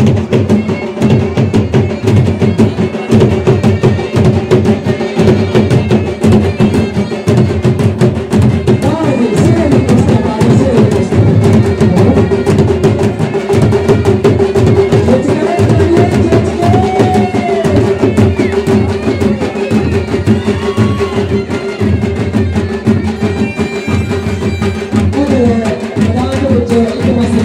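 A traditional folk band's dhol drums beaten with sticks in a fast, continuous rhythm, over a steady held tone.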